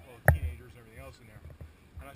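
A single sharp knock close to the microphone about a quarter second in, followed by faint, quiet talk.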